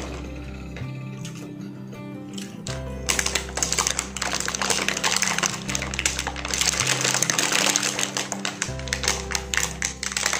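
Plastic food wrap crinkling as it is pulled off a meal box, starting about three seconds in and running on as a dense crackle, over background music with a steady bass.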